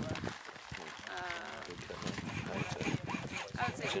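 People talking, with a few short handling knocks and clicks between the words.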